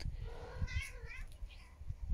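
A cat's drawn-out, wavering yowl, an angry warning at another cat close by.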